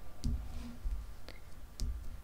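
A few light clicks and taps of a hand with long fingernails touching and shifting tarot cards laid on a cloth-covered table.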